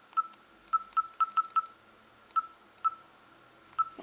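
LG T565 mobile phone's keypad beeping as a phone number is dialed: nine short beeps all at the same pitch, six in quick succession in the first second and a half, then three more spaced out.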